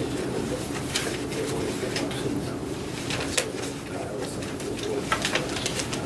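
Sheets of paper rustling and being handled in short scattered bursts over a steady low room hum.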